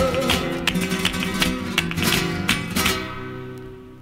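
Flamenco guitar strumming the closing chords of a romeras, with sharp strokes. The last chord rings and fades out from about three seconds in.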